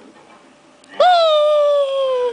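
A baby's long, high-pitched vocal squeal starting about a second in, held on one note that sags slightly in pitch.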